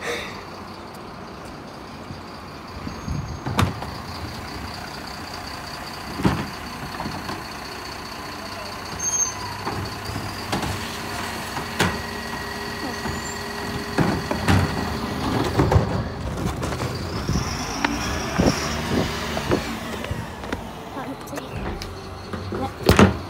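Mercedes-Benz Econic bin lorry at work: its engine runs under a steady high whine, with a series of sharp knocks and clatters from recycling bins being handled on its Terberg OmniDEL lifts, busier in the second half.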